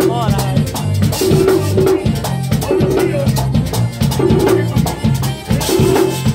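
Live merengue típico: a button accordion playing a melody over a drum held on the lap, likely a tambora, with a steady, evenly repeating dance rhythm and a shaker-like high percussion line.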